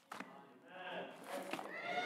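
Faint voices in a church room, with a man starting to laugh towards the end and a soft knock near the start.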